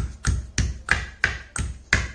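Stone pestle pounding fresh karpuravalli (Indian borage) leaves in a small stone mortar, about three short, sharp strokes a second in an even rhythm.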